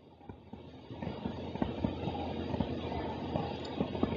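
Stylus writing on a tablet: a muffled scratchy rumble with many small irregular ticks that grows louder about a second in.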